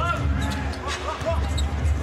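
A basketball bouncing on a hardwood court as the ball is dribbled up, with arena music playing underneath.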